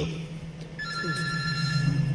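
Electronic tone on a telephone call line: a steady beep of several pitches lasting about a second, starting just under a second in, over a low hum on the line.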